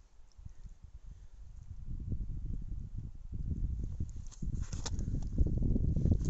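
Wind buffeting the microphone in gusts, building from about a second in, with a few light taps near the end.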